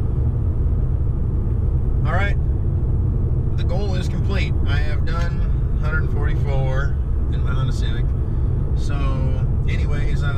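Steady low road and engine rumble of a 2017 Honda Civic EX-T heard from inside the cabin while driving at cruising speed, with a man's voice talking over it.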